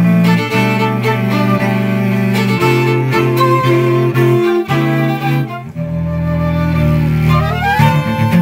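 Recorded instrumental music from a string quartet: bowed violin, viola and cello playing sustained notes over a low cello line. There is a brief drop a little before six seconds, then a long held low note while a higher line slides upward near the end.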